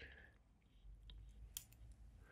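Near silence with a few faint light clicks, the clearest about one and a half seconds in, from a stainless steel watch and its link bracelet being turned over in the fingers.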